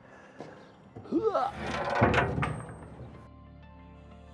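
A metal boat center console being lifted and stood up on a wooden deck: a short grunt of effort, then a loud scrape and thunk as it is set down. Soft background music comes in near the end.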